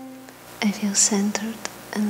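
A held tone fades out at the very start, then a woman speaks softly and breathily into a microphone in short phrases with pauses.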